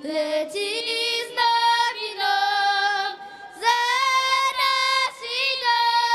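A young girl singing a song into a microphone with no accompaniment, on long held notes that step up and down, with a short break for breath about three seconds in.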